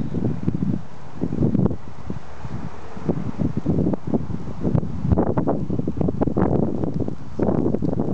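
Wind buffeting the microphone in irregular low gusts.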